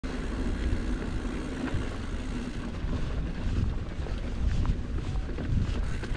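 Wind buffeting the microphone as a mountain bike rolls over a dirt trail, with a steady low rumble and scattered small rattles and clicks.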